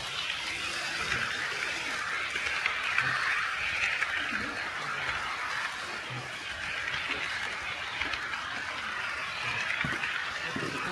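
HO-scale model train running on KATO Unitrack: a steady whirring rolling noise that swells slightly now and then, with faint voices in the background.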